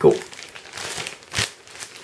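Plastic shrink-wrap on a foam drawer-organizer pack crinkling as it is handled, a rustling with several sharper crackles, the loudest a little past halfway.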